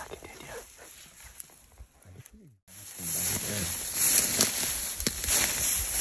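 Footsteps through dry grass and brush, with scattered crunches and snaps. The sound drops out briefly about two and a half seconds in, then comes back louder, with a steady high hiss and low voices under the footsteps.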